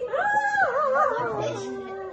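A high, drawn-out whining call that rises, holds for about half a second, then wavers and falls in pitch.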